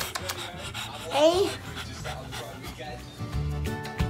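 Pug panting in quick short breaths, with a brief rising vocal sound about a second in. Background music comes in near the end.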